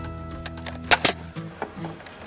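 Pneumatic coil framing nailer firing a nail, toenailing a deck joist into the beam: one sharp shot about a second in, with fainter clicks around it, over steady background music.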